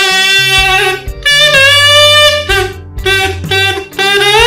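A comb wrapped in a plastic bag, hummed through at the side of the lips so the bag buzzes against the comb's teeth: a tune of about four held buzzy notes with short breaks and steps in pitch between them.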